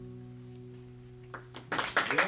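The last chord of an acoustic guitar ringing out and slowly fading, then stopped short near the end as clapping begins.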